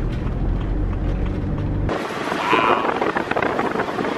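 Steady low rumble of a campervan's engine and road noise heard inside the cabin. About two seconds in it cuts off abruptly and gives way to background music with a flute-like melody.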